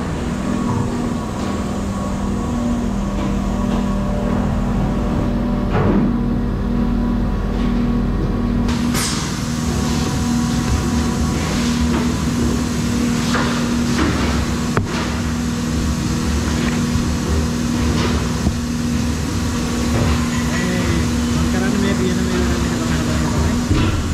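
Steady hum and drone of factory machinery in a plastic bucket plant, with scattered clicks and knocks of plastic parts being handled on a work table.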